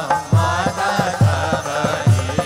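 Devotional chanting with drum accompaniment: a sung melody over deep drum strokes about once a second and a quicker, lighter beat.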